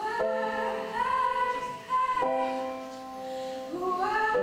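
A girl's solo voice singing a slow original song live, holding long notes and sliding up into them, with piano accompaniment.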